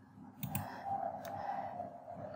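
Computer mouse clicks: a couple of sharp clicks about half a second in and another a little over a second in, over a faint steady sound.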